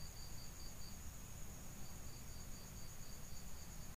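Crickets chirping faintly: a steady high trill with a second pulsed chirp about four times a second, which pauses briefly about a second in.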